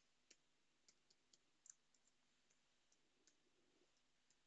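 Near silence broken by faint, irregular clicks of computer keyboard keys as a password is typed, one click a little louder near the middle.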